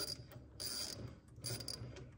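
M12x1.25 thread tap turned by hand in a tap wrench through the drain-plug hole of a Hydro-Gear EZT 2200 transmission case, cleaning out freshly cut threads. It gives faint clicking, scraping strokes a little under a second apart.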